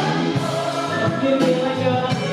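Live music: many voices singing together in chorus over piano and band, an audience singing along.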